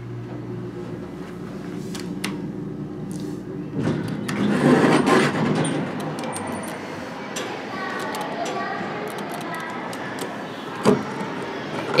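Dover hydraulic passenger elevator arriving: a steady low hum for about the first second, then the doors slide open with a loud rush of noise about four seconds in. A sharp click comes near the end.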